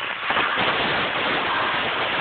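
Propane blowtorch burning steadily with a continuous hissing rush while it cuts through the steel of a truck bumper, throwing sparks.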